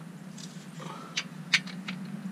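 A few light, sharp clicks of metal parts as a new aluminium clutch slave cylinder is fitted by hand, three of them in the second half, over a steady low hum.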